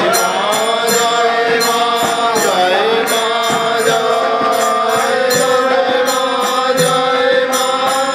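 Devotional prayer song (prarthana): a male voice singing long, held, gliding notes with others joining in, over a harmonium, with jingling percussion keeping a steady beat.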